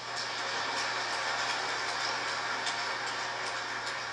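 Large audience in a concert hall applauding steadily.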